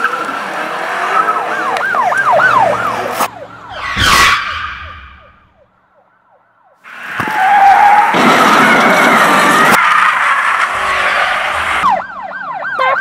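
Sound-effect track of an emergency siren wailing in quick repeating rises and falls. About four seconds in comes a loud crash that falls away into a short lull. From about seven seconds on there is dense car noise with a wavering screech, like skidding tyres.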